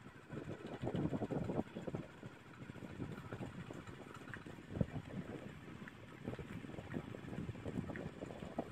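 Wind buffeting the microphone in irregular low rumbling gusts, strongest in the first two seconds, with one sharper thump near the middle.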